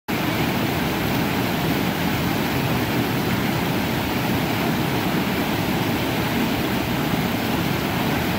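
Whitewater of a rocky stream pouring over boulders and logs: a loud, steady rush of water with no break.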